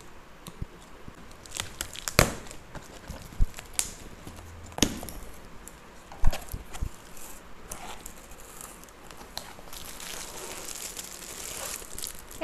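A taped cardboard box being cut and torn open with scissors and its flaps pulled back, with several sharp clicks and snaps in the first half. Plastic wrapping crinkles near the end as the item inside is lifted out.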